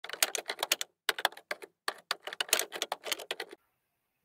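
Rapid typing on a computer keyboard, a fast patter of keystrokes in three runs with short pauses between them, stopping about half a second before the end.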